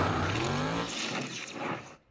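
Dwarf race car's motorcycle engine revving, its pitch rising as the car accelerates, then fading out to silence near the end.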